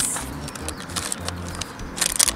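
Plastic blind-bag packet crinkling and tearing as it is pulled open by hand, a run of quick irregular crackles.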